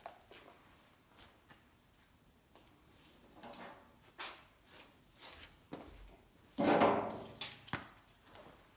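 Faint handling sounds as a respirator is pulled on and adjusted: soft rustling of straps and clothing with a few light ticks, and one louder rustle of about half a second near the end.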